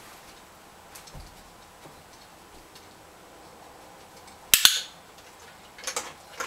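A Great Dane unrolling a fabric mat on a carpeted floor, mostly quiet, with a few faint ticks. About four and a half seconds in comes a sharp double click, the loudest sound, and another click comes near the end.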